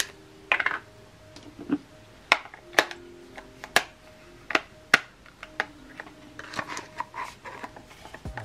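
Plastic clicks and knocks from hands working an Air Wick essential-oil diffuser, opening its housing and fitting a small refill bottle inside. The sharp clicks come irregularly, roughly one or two a second.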